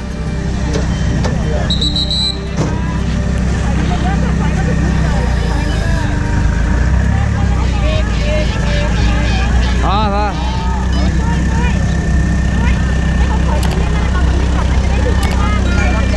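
A vehicle engine running steadily, with people talking over it.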